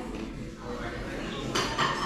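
Metal fork striking a ceramic plate about one and a half seconds in, then a short ringing clink of cutlery on the plate, over low background chatter.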